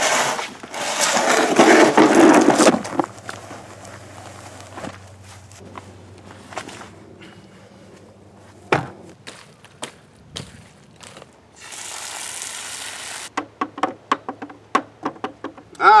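A plastic bucket being handled and scraped, loudest as a scraping rush in the first few seconds. Near the end a brief rushing slide gives way to a quick run of small knocks and clicks as rotting avocados tipped out of the bucket are picked through by hand.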